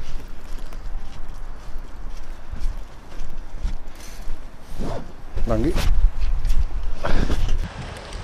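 Footsteps of people walking on paved ground, over a steady low rumble on the microphone. A man's voice is heard briefly past halfway and again near the end.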